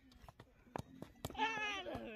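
A few dull knocks of a football being juggled off foot and thigh, about half a second apart. About one and a half seconds in, a louder drawn-out wavering cry, human or animal, sounds over them.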